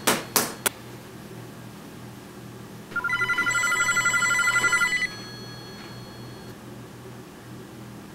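An electronic telephone ringer trilling for about two seconds, starting about three seconds in. A few sharp clicks come in the first second, and a low steady hum runs underneath.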